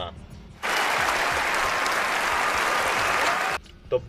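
Applause: many hands clapping in a dense patter for about three seconds, starting suddenly about half a second in and cutting off abruptly near the end.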